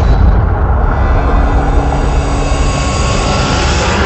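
Cinematic logo-intro sound effect: a loud, deep, steady rush of noise, like a jet or wind, under a high hiss that thins out after the first second and swells again near the end.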